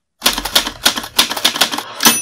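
A rapid, uneven run of typewriter key clacks, about seven a second, used as a sound effect. It starts just after a brief moment of silence.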